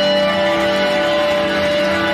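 Live band playing an instrumental passage without vocals: guitar over steady, held notes.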